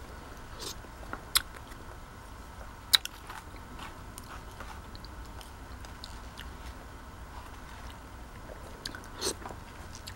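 Close-up eating sounds: a mouthful of soft semolina porridge with cherries being chewed, with scattered sharp clicks. The loudest two clicks come about a second and a half and three seconds in.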